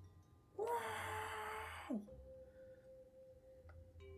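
A person's breathy held vocal sound, like a long sigh or falsetto 'aah', at one steady pitch for just over a second, then dropping sharply in pitch as it ends. Faint held notes of background music follow.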